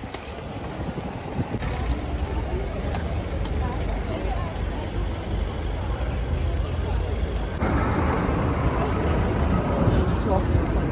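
Busy street ambience: passers-by talking and passing traffic, over a steady low rumble. It gets louder about three-quarters of the way through.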